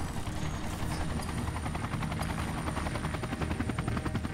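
Helicopter rotors passing, a steady, fast, even beat of blades over a low drone.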